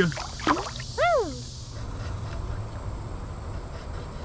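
Shallow creek water sloshing as a hand lets a smallmouth bass go, then a steady low wash of moving water.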